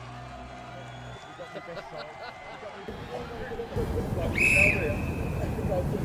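A referee's whistle blown once, short and shrill, about four and a half seconds in, signalling that the penalty can be taken. It sounds over a low murmur of voices and outdoor noise.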